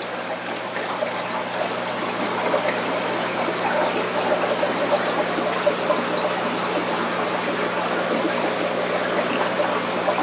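Aquarium filtration: water trickling and air bubbling steadily from the tank's air-driven sponge filters, with a low steady hum underneath.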